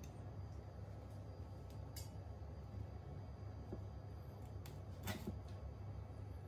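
A low, steady room hum with a couple of faint, short taps, from a kitchen knife cutting through sardine heads against a wooden cutting board.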